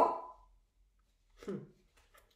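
A woman's voice: the end of her imitated dog bark, "woof", fading out in the first half second, then quiet, then a short "hmm" about a second and a half in.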